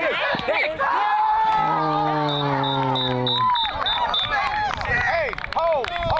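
Several voices shouting and calling out across a football field during a pass play, with one man's long held yell in the middle that falls slightly in pitch.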